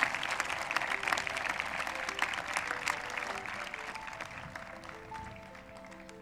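Audience applauding, the clapping fading away over several seconds. Soft background music with slow, held single notes comes in about halfway through.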